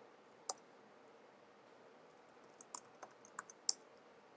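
Keystrokes on a computer keyboard: a single key about half a second in, then a quick run of about six keys near the end, the last one the loudest.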